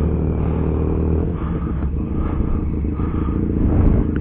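A car engine running nearby: a low, steady rumble that roughens about a second in.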